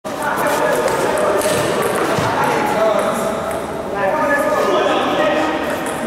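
Voices talking in a large, echoing sports hall, with a table tennis ball clicking off rackets and table during a rally in the first couple of seconds.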